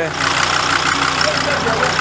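A vehicle engine idling steadily close by, with faint voices over it.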